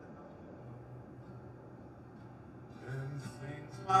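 Acoustic guitar played quietly, a low note held under soft picking, with a man's voice coming in near the end.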